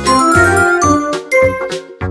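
Bright tinkling chime sound effect over cheerful children's background music with a steady beat; the chime comes in at the start.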